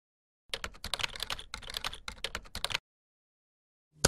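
Computer keyboard typing: a quick run of key clicks lasting a little over two seconds, starting about half a second in.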